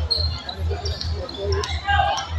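A basketball being dribbled on a concrete court, with sharp bounces. Crowd voices murmur in the background.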